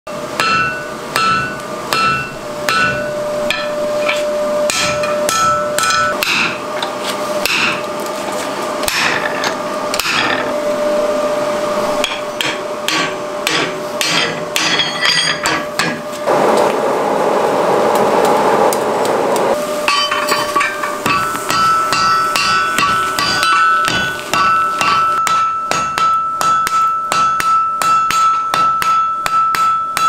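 Hand hammer striking hot mild steel on an anvil: repeated blows, each leaving the anvil ringing, coming faster near the end, as a cleft joint is forge welded. A dense rushing noise runs for about three seconds midway.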